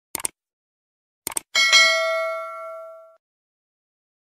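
Subscribe-button animation sound effect: two quick double clicks of a mouse, then a single bell ding about one and a half seconds in that rings out and fades over about a second and a half.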